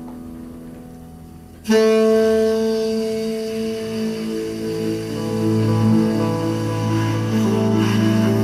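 Live jazz: a tenor saxophone with double bass and piano. The sound is soft at first, then the saxophone comes in suddenly about two seconds in with a long held note, followed by more sustained melody over a low bass note.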